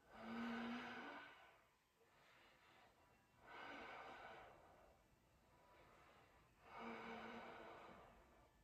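A man breathing audibly, three slow, faint breaths each lasting about a second and a half, spaced roughly three seconds apart.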